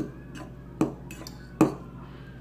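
A metal fork clinking against a ceramic noodle bowl three times, evenly, a little under a second apart.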